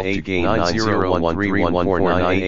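A synthesized, effects-laden voice speaking continuously over a steady low hum.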